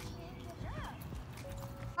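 Faint voices with quiet music; a child gives one short rising-and-falling call about a second in.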